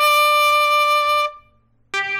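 Solo trumpet holding one long note of a baseball cheer song, which stops after about a second and a quarter. After a brief silence, the trumpet starts playing again right at the end.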